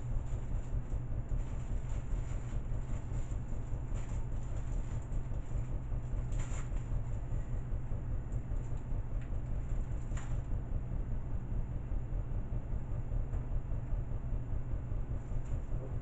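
Steady low rumble of background noise, with two faint clicks about six and ten seconds in as small hardware packets are handled.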